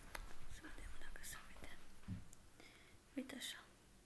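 A woman talking softly, close to a whisper, over the rumble and small clicks of a handheld camera being carried, with a short spoken "așa" near the end.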